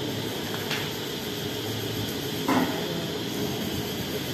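Steady room noise, a hum with hiss, with one short soft sound about two and a half seconds in.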